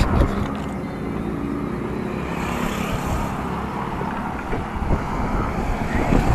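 Steady outdoor road-traffic noise from a nearby highway, with wind blowing on the microphone.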